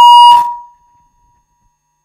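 Loud steady high-pitched howl of microphone feedback through a PA system, cut off by a sharp click about a third of a second in, with a faint ring fading away after it.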